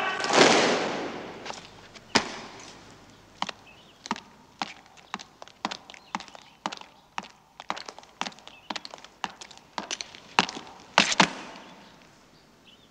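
Boots of a column of marching soldiers striking stone paving: sharp separate footfalls about two a second, with two louder ones near the end. A loud crash at the start dies away over about a second.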